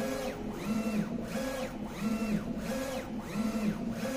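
3360 UV flatbed printer's print-head carriage sweeping back and forth while printing on acrylic: a motor whine that rises in pitch, holds, and falls on each pass, about six passes in a steady rhythm.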